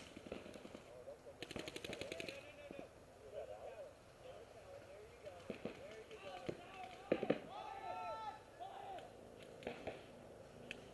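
A paintball marker firing a rapid string of about a dozen shots in roughly one second, faint and distant, about a second and a half in. Faint distant shouting follows.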